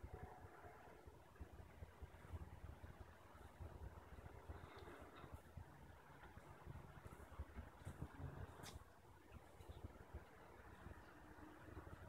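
Near silence: a faint low background rumble, with one faint click a little over two-thirds of the way through.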